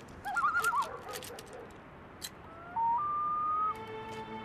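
A horse whinnies briefly, a short quavering call, near the start, among a few soft knocks. About two and a half seconds in, a single high note of background music slides up and holds for about a second.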